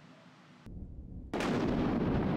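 A low rumble starts partway in, then a sudden loud boom that keeps rumbling and fades slowly.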